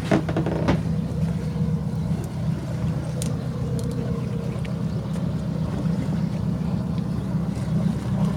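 Boat engine running at a steady, unchanging pitch: an even low hum.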